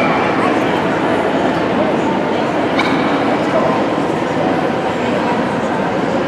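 Dogs barking and yipping over the steady chatter of a crowd in a dog show hall.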